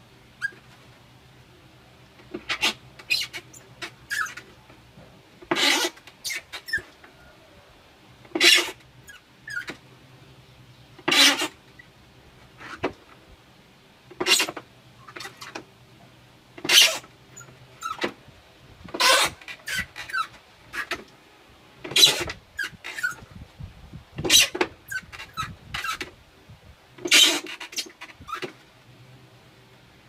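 A clear plastic container scraping and creaking as it is handled and worked with wire: short rasping bursts, a stronger one about every two to three seconds, with smaller clicks between.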